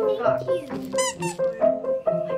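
Background music with a light repeating melody, and a plush squeaky dog toy squeaking high and briefly about a second in.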